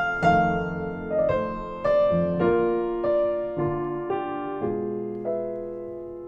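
Solo piano playing slowly, with no voice: single notes and chords struck about every half second and left to ring and fade, the last one dying away near the end.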